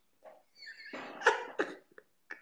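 A man laughing hard in a string of short, breathy bursts with brief silent gaps between them, about five over two seconds.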